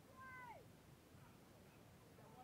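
A faint, distant high-pitched shout, one short call falling in pitch.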